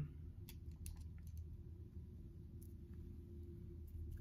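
A few faint clicks and taps from a foundation stick and its brush applicator being handled, mostly in the first couple of seconds, over a low steady hum.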